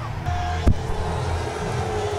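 A single sharp thump about two-thirds of a second in, from a handheld microphone being dropped, heard over a steady low hum and background music.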